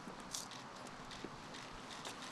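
Faint, scattered footsteps and scuffs of boots on stone paving over a steady outdoor hiss, with one brief scrape about a third of a second in.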